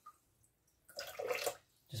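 Water trickling briefly out of a BRITA filter cartridge lifted from a jug of tap water, a short run of dripping and splashing about a second in.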